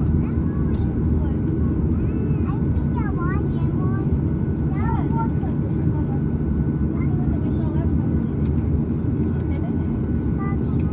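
Inside the cabin of a Boeing 737 airliner while taxiing, the jet engines run at idle under a steady low rumble. Faint high-pitched voices wander over the rumble.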